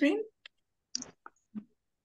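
A spoken word trails off. Then come four brief, faint clicks and snippets of sound, spread over about a second and a half.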